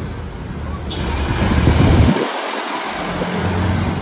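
Street traffic: a motor vehicle passing close, its noise building to a peak about two seconds in over a steady low rumble.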